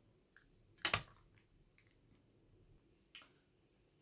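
Hard plastic PSA graded-card slabs clicking and clacking as they are handled, with one louder clack about a second in and a few lighter clicks after.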